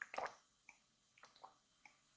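Close-miked gulps of water being swallowed from a glass: one gulp right at the start, then a few faint wet clicks of the throat and lips.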